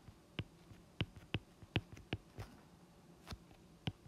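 Stylus tip tapping on a tablet's glass screen while handwriting: a string of light, sharp taps at irregular intervals, one for each stroke of the letters and bonds being drawn.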